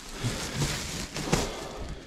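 Large sacks of used clothing rustling and shifting as they are handled and stood up, with a sudden sharp noise a little after a second in.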